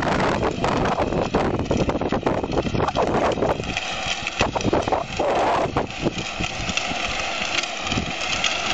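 Battery-powered ride-on toy Jeep driving, its electric motors and gearbox whining steadily and its plastic wheels rolling on concrete, over a constant rushing noise.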